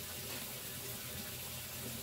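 Steady, even background hiss with a faint low hum underneath; no distinct sound events.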